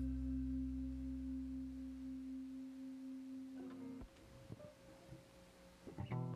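The last chord of a song for guitar, strings and bass, held and dying away: the low bass notes fade out about halfway through and the remaining held tones stop a little later, leaving a few faint clicks.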